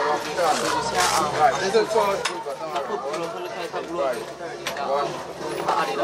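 Indistinct chatter of several people talking over one another, with a couple of sharp knocks about one and two seconds in.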